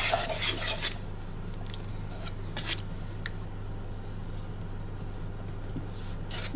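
Metal cutlery stirring and scraping in a stainless steel bowl, dissolving yeast in water: a dense scraping for about the first second, then a few light clinks, over a steady low hum.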